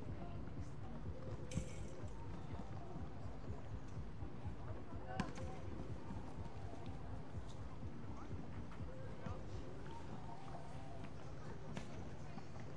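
Outdoor ambience of distant, indistinct voices over a steady low rumble, with a few sharp knocks, the loudest about a second and a half in and about five seconds in.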